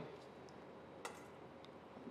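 Near silence with a faint click about a second in, from whole spices being dropped into a small stainless-steel pan.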